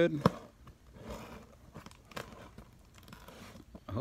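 Clear packing tape on a cardboard box being slit with a small blade and pulled up, with faint scratching and crinkling and a few light clicks; one sharper click comes just after the start.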